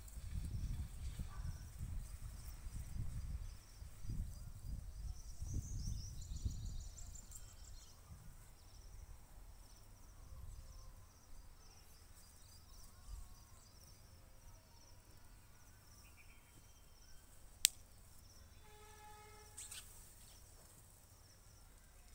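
Hands scooping and mixing loose soil and manure in a planting pit: faint, uneven scraping with low rumbling through the first several seconds. A single sharp click comes in the last few seconds, followed by a short pitched call.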